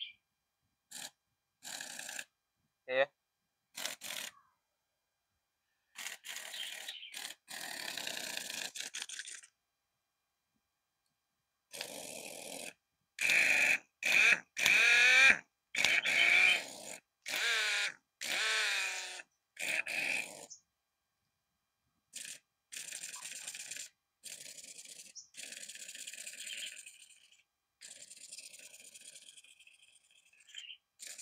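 Compact twin-hammer pneumatic impact wrench run free in a series of short trigger bursts, its air motor whining up and coming off again each time. The bursts near the end are quieter.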